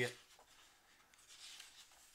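Faint, soft rustle of a hand brushing a glossy magazine page, about a second and a half in, in an otherwise near-silent room.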